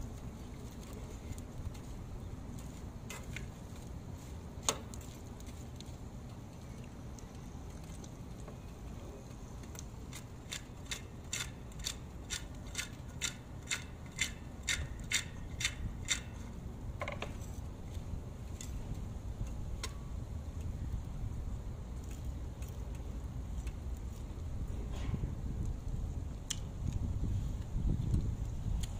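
Metal spoon clinking and scraping against a frying pan while stirring dried anchovies, with a run of quick clinks, about three a second, in the middle, and a few single clinks before and after, over a steady low rumble.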